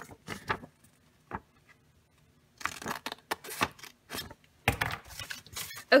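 Scissors snipping through paper in irregular short bursts, with a pause of about a second a little before the middle. Near the end the cut paper pieces rustle as they are handled.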